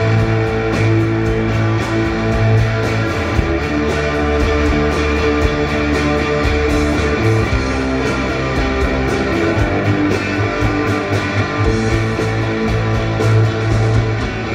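Live rock band playing an instrumental passage: two electric guitars through amplifiers, bass guitar and drum kit, with no singing.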